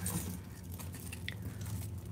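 Faint handling of costume jewelry: a metal chain and beads shifting in the hands, with one small clink a little past halfway, over a steady low hum.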